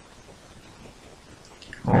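Quiet room tone with a faint hiss, then a man's voice begins near the end.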